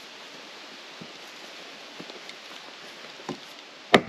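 Hatchet chopping the end of a peeled cedar post to a point: a few light knocks, then one sharp chop just before the end.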